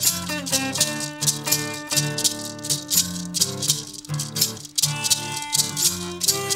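Instrumental acoustic blues: two acoustic guitars playing, with a shaker keeping a steady beat. A harmonica comes in near the end.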